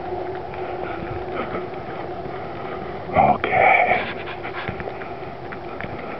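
Two short, loud panting breaths about three seconds in, over a steady faint hum.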